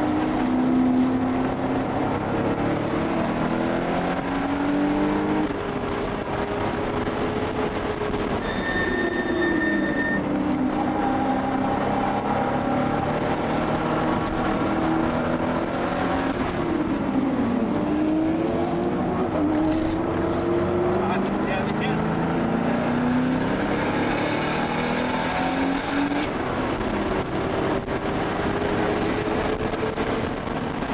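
1979 Porsche 930 Turbo's air-cooled turbocharged flat-six heard from inside the cabin, pulling hard at speed, its pitch climbing through the gears. The pitch drops sharply about halfway through as the car slows for a corner, then climbs again. A brief high steady tone sounds about nine seconds in.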